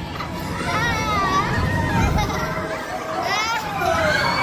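A young girl laughing and squealing in a high voice that wavers up and down, with a quick rising squeal near the end. Other children's voices and a low rumble sit underneath.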